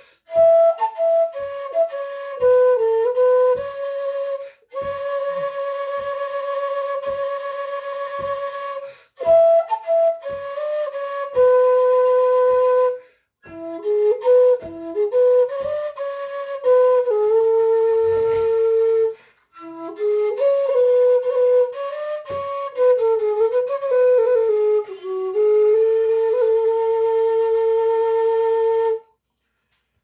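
Metal whistle (fipple flute) playing a slow Breton melody: phrases of long held notes decorated with quick grace notes, separated by short breaths. The playing stops near the end.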